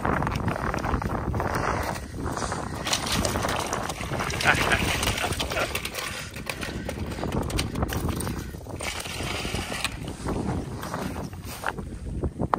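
Irregular scraping and rustling as a trout is pulled up through an ice-fishing hole by hand and onto the ice.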